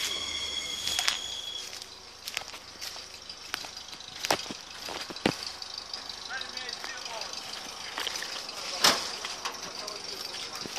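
Footsteps on forest leaf litter with a scattering of sharp snaps of dry twigs and branches, the loudest near the end. A thin steady high tone sounds for the first second and a half.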